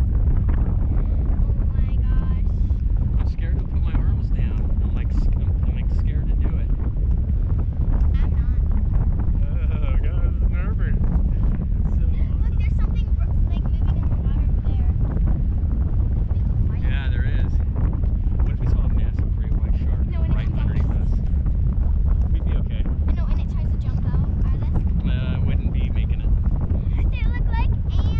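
Steady, heavy wind buffeting the microphone of a camera high on a parasail rig. There are faint snatches of voices now and then.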